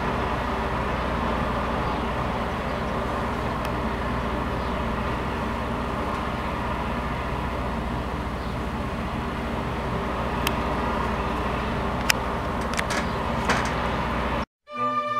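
Steady low rumbling background noise with a constant hum, and a few sharp clicks in the last few seconds.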